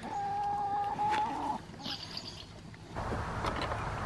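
A chicken giving one long, steady call lasting about a second and a half, followed by a brief high chirp. From about three seconds in, a steady outdoor hiss takes over.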